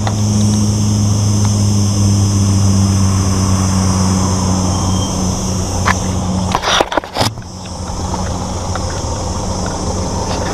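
Car engine idling close by, a steady low hum. About seven seconds in there is a short cluster of knocks and rustling, after which the engine hum is quieter.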